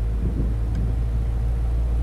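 A steady low rumble with a constant hum, the sound of a running engine or machine.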